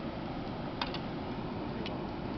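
Steady open-air background noise, a low rumble like wind on the microphone, with a quick double click about a second in and another single click near the end.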